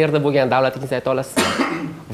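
A man speaking in short pieces, with a brief cough about one and a half seconds in.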